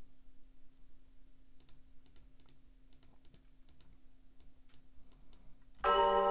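Faint scattered clicks of a computer keyboard and mouse over a faint steady hum. Just before the end, the beat starts playing back loudly, with bell-like melody tones.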